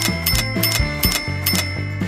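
Coins clinking into a glass jar as a cartoon sound effect: a quick, even run of sharp clinks, about five a second. Background music with a bass line plays underneath.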